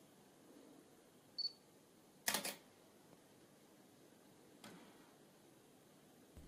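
Panasonic G5 mirrorless camera autofocusing and firing: a short, high focus-confirmation beep, then about a second later the shutter going off with a loud, quick double click. A much fainter click follows a couple of seconds later.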